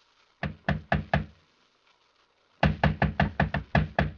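Knocking on a door as a radio-drama sound effect: four knocks, a pause of about a second, then a quicker run of about seven knocks. The knocking announces a caller wanting to be let in.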